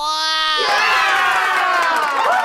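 A short rising tone, then from about two-thirds of a second in, a crowd of children cheering and shouting, the stock cheer sound effect that greets the character reveal.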